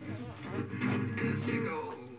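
A recorded song playing: a sung voice over guitar accompaniment.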